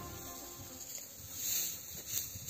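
Insects chirping in a summer hay meadow, a high, fairly quiet sound that swells a little more than a second in.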